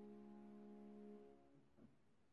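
A held chord on a Yamaha upright piano, ringing softly and cutting off about a second and a half in, followed by a faint brief noise.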